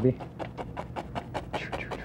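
Fan brush loaded with thick oil paint striking and dragging against a stretched canvas in rapid, even strokes: the brush being knocked in to build a tree trunk.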